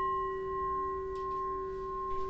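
Metal singing bowl ringing on after a single strike: one low tone with higher overtones above it, held steady and fading only slightly.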